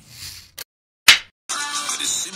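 Editing transition: a brief hiss, a cut to silence, then one sharp swoosh sound effect about a second in, after which background music starts.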